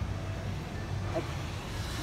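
Steady low rumble of passing road traffic, with no single event standing out.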